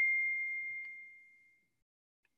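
A single ding: one clear, high, bell-like tone that starts sharply just before and fades out over about a second and a half, like a computer notification chime.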